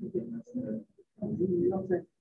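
A person's voice over a video call, coming through in broken chunks that the speech recogniser could not make out, as over a poor network connection.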